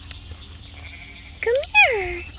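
A young lamb bleats once near the end, a call about a second long that rises and then falls in pitch.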